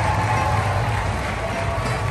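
Dense, steady ballpark crowd noise, with music playing over the stadium's public-address system.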